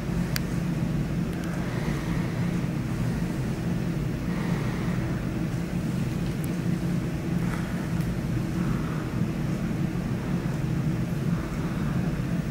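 Steady low machine hum, with a faint click near the start and a few soft faint rustles.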